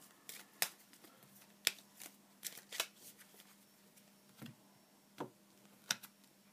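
Cards from the Fantod pack being shuffled and handled, a string of sharp, irregular snaps and clicks, with the loudest ones about half a second in, about a second and a half in, and near the end.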